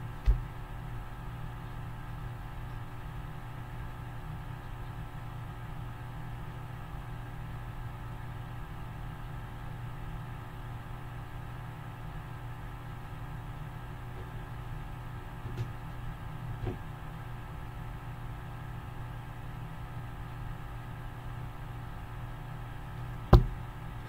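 A steady low hum made of several fixed tones, with a few faint knocks: one just after the start, two a little after the middle and one just before the end.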